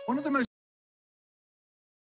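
A brief pitched sound from a film's soundtrack, cut off abruptly about half a second in, then dead digital silence: the audio of the screen-shared film has dropped out of the video call.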